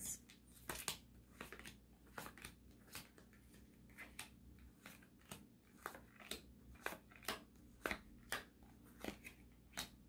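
Tarot cards being dealt one at a time onto a hard tabletop: a faint run of short, light card snaps and taps, about two a second.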